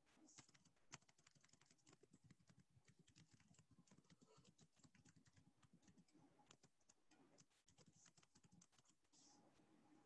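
Very faint computer keyboard typing, a scatter of soft key clicks, with two slightly louder clicks about a second in.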